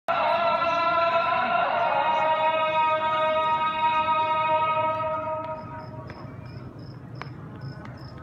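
Islamic call to prayer chanted from the mosque, one long held sung note that fades out about five seconds in. Quieter short high chirps follow, repeating two or three times a second.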